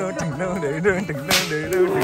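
A whip cracks sharply a little over a second in, over traditional music with a wavering singing voice.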